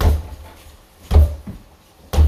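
Acoustic drum kit struck slowly with sticks: deep hits with a short ring. One comes at the start, the loudest just over a second in, and a lighter one just after it.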